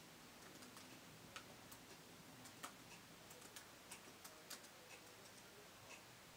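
Faint, irregular clicking of laptop keys being typed on, a dozen or so light clicks at uneven intervals.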